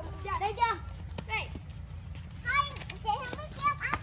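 Young children's high-pitched voices: short calls, squeals and babble during play, with a couple of sharp knocks and a steady low hum underneath.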